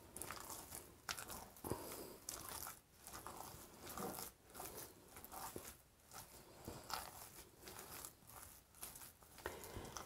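Thick cornbread batter of coarse home-ground parched corn meal being stirred and worked in a glass mixing bowl: faint, irregular strokes of stirring and scraping. The batter is still stiff, the meal slowly absorbing water that was just added.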